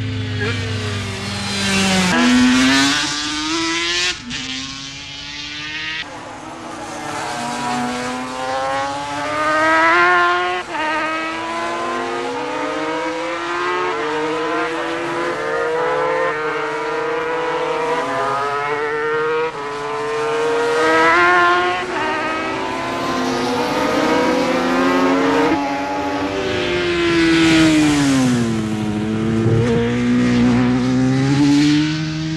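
500cc two-stroke Grand Prix racing motorcycle engines at full throttle, the pitch climbing through each gear and dropping back at every shift. The sound changes abruptly a few times, near 2, 4, 6 and 26 seconds in.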